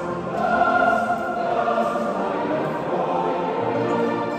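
Live ensemble music with a choir singing sustained chords, echoing in a large stone church.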